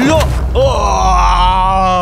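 A man's long, drawn-out groan of pain, its pitch sinking slightly, as from someone hurt after being thrown to the ground in a fight.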